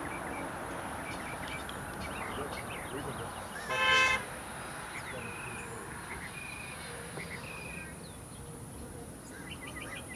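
Outdoor ambience with small birds chirping and giving brief whistled notes now and then. About four seconds in, a short horn-like toot, the loudest sound.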